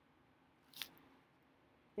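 Near silence, broken by a single brief crisp click or snip-like noise just under a second in.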